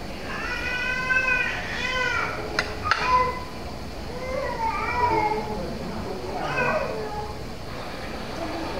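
A baby fussing in several drawn-out, high-pitched wails whose pitch bends up and down, the longest in the first two seconds. Twice, about two and a half to three seconds in, there is a sharp clink of a metal knife or fork against a china plate.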